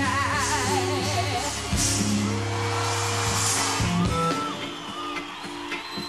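A female vocalist sings live into a microphone, with a wavering, ornamented vocal run over a full band and bass. About four seconds in, the backing drops away and the music turns quieter.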